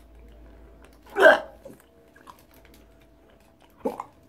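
A man gags once, a short loud retching grunt of disgust about a second in, over faint wet mouth clicks as he spits out a mouthful of sprouts. A brief vocal sound comes just before the end.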